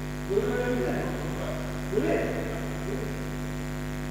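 Steady electrical mains hum from the band's amplifiers and PA speakers, with a voice heard briefly three times over it.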